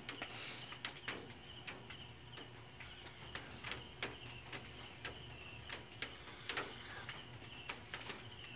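Crickets trilling steadily, with faint scattered clicks.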